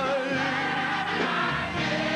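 Gospel mass choir singing with a male lead vocalist on a microphone, over live band accompaniment, with long wavering held notes.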